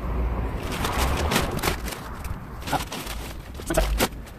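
Heavy plastic sacks of wood chips rustling and crunching as they are hauled out of a car boot and set down on the ground, with scattered sharp crackles over a low rumble.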